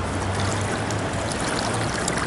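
Pool water sloshing and trickling steadily around a person wading through a swimming pool.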